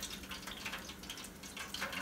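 Hot oil in an electric deep fryer sizzling faintly with scattered small crackles, as grease drains from the lifted basket of fried crappie fillets back into it.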